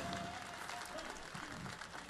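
Faint audience applause and crowd noise at the tail of a live song, after the band has stopped.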